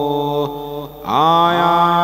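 A man's voice chanting Buddhist pirith in Pali on a steady held note. It breaks off briefly just before the midpoint, then takes up the next syllable with a rising glide and holds it.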